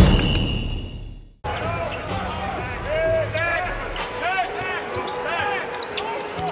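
Drum-led music fades and cuts off about a second and a half in. Then live game sound takes over: a basketball bouncing on the hardwood court, sneakers squeaking and the arena crowd murmuring.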